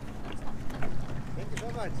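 A boat engine running with a steady low hum, with a few short knocks in the first second.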